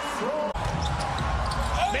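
Basketball game sound in an arena: a steady crowd murmur with a ball bouncing on the court, cut in abruptly about half a second in.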